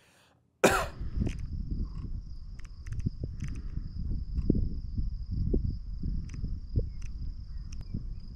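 Rumble and handling noise on a handheld action camera held close to the face outdoors, with scattered clicks and a thin, steady high whine throughout. About half a second in, after a brief silence, a short loud cough-like vocal sound.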